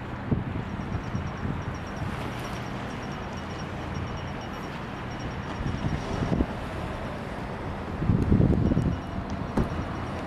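Wind buffeting the microphone over a steady low outdoor rumble, with the strongest gusts about eight seconds in. A faint, rapid high-pitched ticking runs through the first six seconds.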